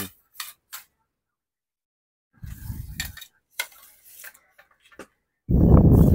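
A fishing rod being handled: a few light clicks and taps, and two bursts of muffled rubbing, the louder near the end.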